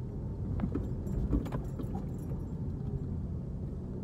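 Car cabin noise while driving slowly: a steady low engine and road rumble, with a few light clicks or rattles about a second in.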